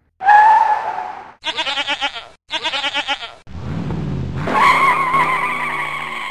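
Sound effects: a short tire squeal, then two quavering goat bleats, then an engine rev that runs into a long, wavering tire squeal.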